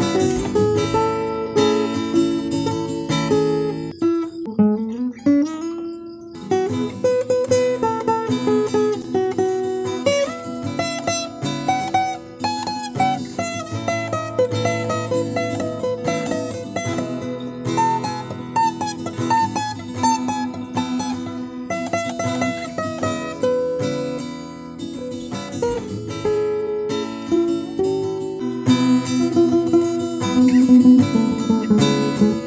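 Steel-string acoustic guitar playing a chord progression with plucked and strummed notes. One note slides upward in pitch about five seconds in.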